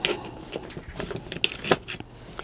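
Hands handling a freshly repotted jade plant in its pot of gritty soil: a few short light clicks and scratchy rustles, the sharpest at the very start and about three-quarters through.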